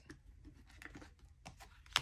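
Faint rustling and light taps of tarot cards being handled and laid down on a cloth-covered table, with one sharper click near the end.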